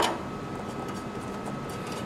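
A single sharp click as a hand works at the top plate of a tube amplifier. It is followed by a steady low hiss with a faint steady high tone.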